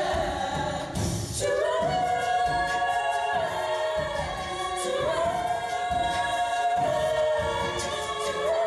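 Women's a cappella group singing through microphones. Several voices hold long notes in close harmony, moving to a new chord about every two to three seconds.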